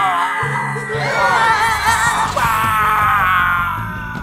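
Cartoon characters' voices roaring and yelling in wavering, drawn-out cries over background music.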